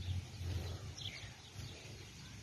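Quiet garden ambience with a low rumble and a faint bird chirp about a second in.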